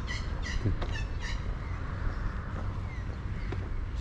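A bird giving a quick series of short, pitched calls in the first second and a half, over steady low outdoor noise.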